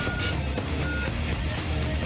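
Opening theme music of a TV news programme, a dense, loud track with short high beeps laid over it.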